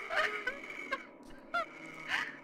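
About four short, honk-like cries, each bending in pitch, over a faint steady hum on the horror tape's soundtrack.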